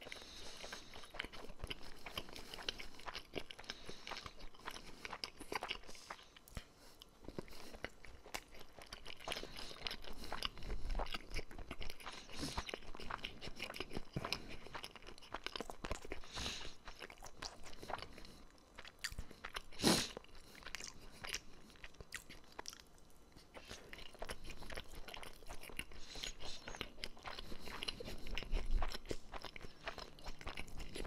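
Sushi being chewed close to a microphone: a continuous run of fine, wet clicking mouth sounds, with one sharper, louder click about twenty seconds in.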